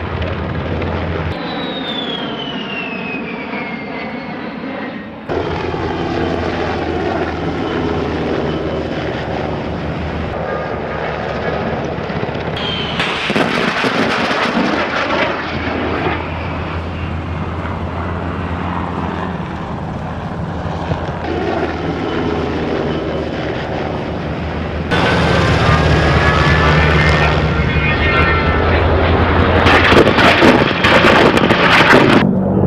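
A-10 Thunderbolt II's twin turbofan engines whining through several low passes, the pitch sliding down as the jet goes by, with abrupt changes in sound between spliced clips.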